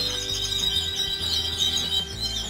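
Domestic canaries singing in their breeding cages: a fast, high, rolling trill with a sustained high note held through it, over a low steady hum.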